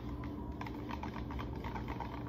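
Spoon stirring a drink in a clear plastic cup: a quick, uneven run of light clicks and taps against the cup's sides.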